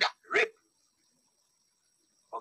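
Dog barking twice in quick succession, short sharp barks about half a second apart, the end of a longer run of barks.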